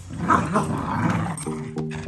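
Small dogs play-wrestling and vocalizing at each other. Background music with steady notes comes in about one and a half seconds in.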